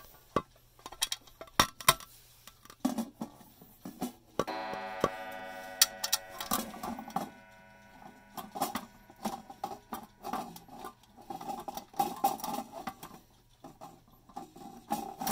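Chime clock being handled, with clicks and knocks, then a single chime strike rings out about four and a half seconds in and fades over about two seconds. More rubbing and clicking follows as the clock is handled.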